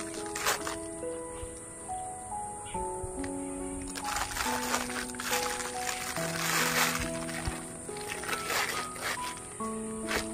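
Background music, a slow melody of held notes, over the crinkling of a clear plastic bag as a toy tractor is unwrapped, busiest about halfway through.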